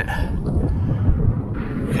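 Low, uneven rumble of wind buffeting the microphone, with a spoken "okay" right at the end.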